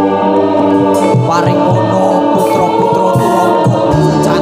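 Loud live Javanese gamelan accompaniment for a kuda kepang dance, with voices singing over many sustained, held tones.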